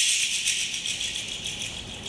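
A handheld shaker rattle shaken rapidly, starting suddenly and fading away over about two seconds.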